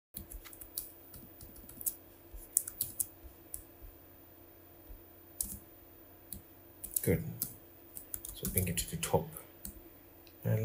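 Computer keyboard keys and mouse buttons clicking irregularly as shortcuts and selections are made. A brief murmur of voice comes about seven seconds in and again near nine seconds.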